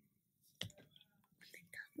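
Near silence, broken by a short click about half a second in and faint whispering from a young boy near the end.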